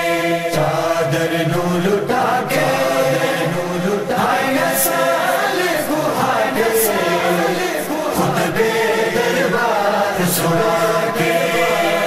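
Chanted vocal chorus of a noha (Shia lament): voices holding a slow, drawn-out melody between the reciter's sung verses.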